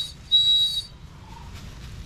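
Small glazed ceramic bird whistle blown in short, high, steady toots: one note ends right at the start and another lasts about half a second shortly after.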